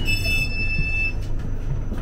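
Interior of a Class 458 electric multiple unit in motion: a steady low rumble of the train running. A high, steady tone with overtones sounds for about a second at the start, then stops.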